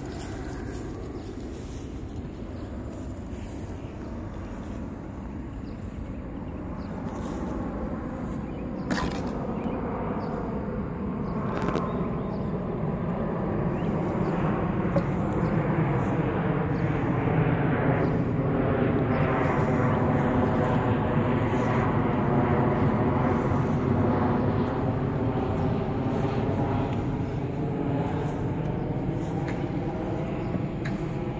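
Engine noise of something passing at a distance, swelling over about ten seconds and then slowly fading. A couple of sharp knocks come about 9 and 12 seconds in.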